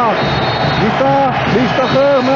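A man's voice, the television match commentary, over a steady haze of stadium crowd noise.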